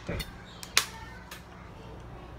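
A sharp click and then a fainter one as plastic water bottles are tipped up to the mouth to drink, over a low steady hum.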